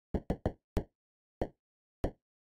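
Synthesized percussive clicks from a Max/MSP patch: random-noise blips shaped by a fast-decaying envelope and fired at random. About five dry, knock-like ticks come at uneven intervals, three in quick succession early, then two spaced further apart.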